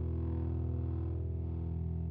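Instrumental music holding one sustained final chord of a worship song, steady in the low notes while the higher notes fade away.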